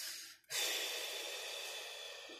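A person's breath: a drawn-in breath, then after a brief pause a long exhale like a sigh that starts suddenly and slowly fades.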